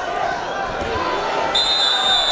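Arena crowd murmur with dull thuds as a wrestler is thrown onto the mat. About one and a half seconds in, a referee's whistle sounds one steady, piercing blast lasting about a second.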